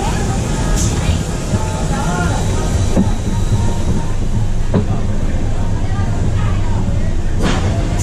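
Roller coaster car rolling slowly along its track through the station: a steady low rumble of wheels on the rails, with three sharp clicks or knocks along the way.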